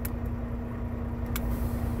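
Semi-truck engine idling steadily in the cab, with two sharp clicks, one at the start and one about a second and a half in, as the dash switch for the fifth-wheel auto-release is worked and the locking jaws release from around the trailer's kingpin.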